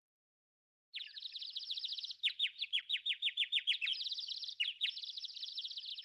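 Birds chirping, starting about a second in: fast, high trills of many quick notes, with a stretch of slower, separate downward-sliding chirps in the middle.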